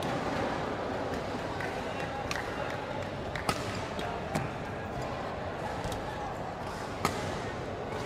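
Badminton rally: several sharp racket strikes on a shuttlecock, a second or a few seconds apart, the crispest about three and a half and seven seconds in, over a steady background of voices in a large sports hall.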